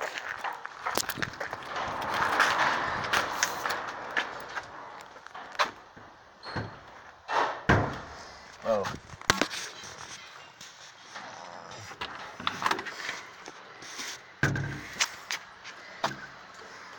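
Irregular knocks, clicks and scuffs of footsteps and handling while walking on concrete, with a few short bits of voice.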